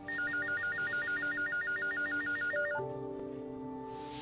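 A telephone's electronic ringer warbling rapidly between two high pitches, about eight flips a second, for one ring of about two and a half seconds that cuts off sharply. Soft background music plays under it.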